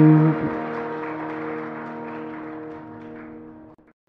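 A held final sung note stops about a third of a second in. The harmonium's sustained reed chord rings on alone, fading steadily, and cuts off abruptly just before the end.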